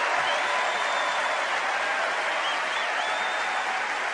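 A large convention crowd applauding steadily, easing off slightly toward the end.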